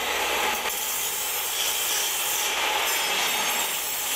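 Steady harsh rasping hiss of tool work at an industrial construction site, grinding or cutting metal, holding at one level throughout with a faint high whine about three seconds in.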